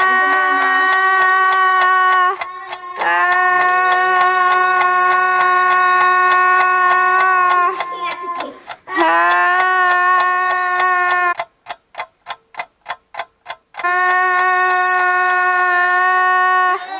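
A single-pitch, horn-like blown tone held for a few seconds at a time and sounded four times at the same pitch, with short breaks between. Under it runs an even ticking of about four clicks a second, heard on its own for a couple of seconds near the end.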